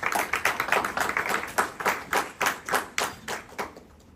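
A small audience applauding: individual hand claps, dense at first, thinning out and dying away shortly before the end.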